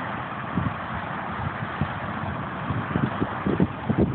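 Wind gusting through a stand of cattails, their leaves rustling in a steady hiss, with wind buffeting the microphone in uneven low rumbles that grow stronger near the end.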